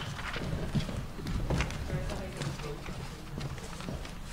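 Footsteps of hard-soled shoes on a wooden floor, a series of separate clicking steps, over faint murmured voices.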